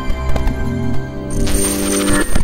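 Channel intro music with held electronic notes and sharp metallic clicks. About a second and a half in, a burst of hiss with a thin, high tone comes in under the glitchy logo transition.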